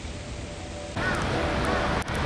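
A crow cawing over a steady outdoor hiss that starts suddenly about a second in.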